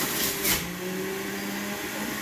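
Oster juice extractor's motor running steadily with a whirring hum as produce is pushed down the feed chute. There is a knock about half a second in, after which the motor note drops slightly under the load and then comes back up near the end.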